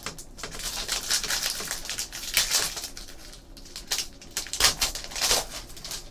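Foil trading-card pack wrapper crinkling and tearing as hands peel it open: a steady run of crackles with a few louder bursts.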